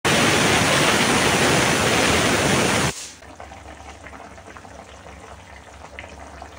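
A loud steady hiss for about three seconds that cuts off suddenly, then quieter sizzling with light crackles of mutton frying in its own fat in a pan.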